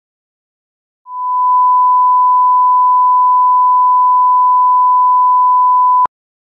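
A steady 1 kHz reference test tone, a single pure beep. It fades up over about half a second starting about a second in, holds at an even loud level, and cuts off abruptly at the end.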